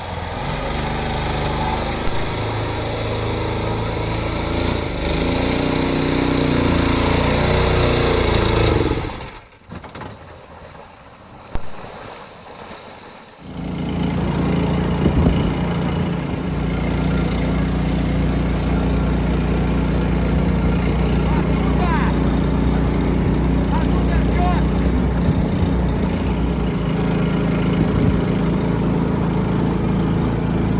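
All-terrain vehicle engine running under load as it drives over a rough, muddy track, its pitch rising for several seconds before it drops away. After a quieter few seconds the engine runs again at a steady pitch, heard from on board the moving vehicle.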